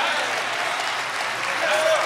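Church congregation applauding, with scattered voices calling out.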